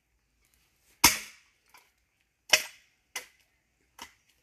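Axe blows splitting a log: two sharp strikes about a second and a half apart, each followed by a lighter knock.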